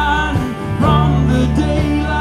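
Live alt-country band playing: guitars over bass and drums. The sound dips briefly about a third of the way in, then the band moves to a new chord.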